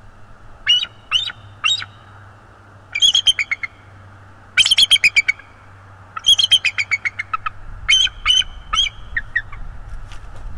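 Bald eagle calling: three separate high piping notes, then four quick chattering runs of notes, each run trailing off lower in pitch.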